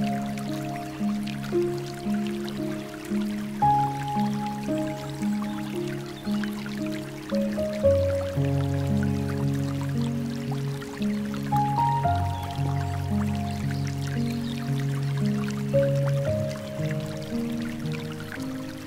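Slow, gentle piano music, a repeating broken-chord figure in the low register under a soft melody, over the trickle and drip of water from a bamboo fountain.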